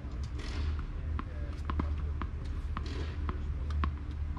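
Tennis balls knocking on a hard court: irregular sharp bounces and racquet strikes, several a second at times, over a steady low rumble.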